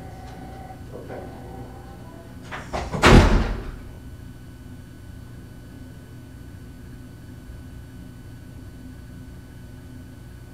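A door shutting with one loud thud about three seconds in, just after a couple of short clicks from its handle or latch, followed by steady room hum.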